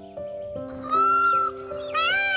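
Indian peafowl (peacock) giving its loud wailing call, one rising-and-falling cry about a second in, over background music of soft held notes.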